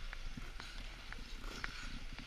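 Ice skate blades scraping and clicking on rink ice: scattered sharp clicks over a steady hiss and low rumble.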